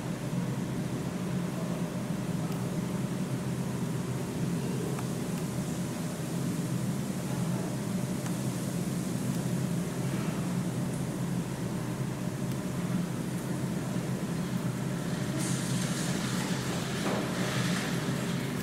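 A steady low machine hum with a faint steady whine above it, unchanging throughout. A brief hiss of noise comes about three seconds before the end.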